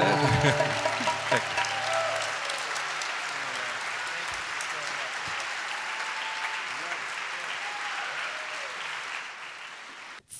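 Audience applauding at the end of a song, the last acoustic guitar chord ringing out under it for the first two seconds. The applause slowly dies away toward the end.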